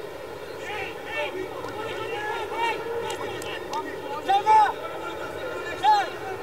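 Men's voices shouting and calling out on a football pitch, in short separate calls, with louder shouts about four and a half seconds in and again near the end.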